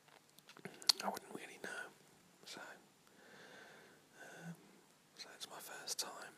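A man whispering, with a few sharp mouth clicks about a second in.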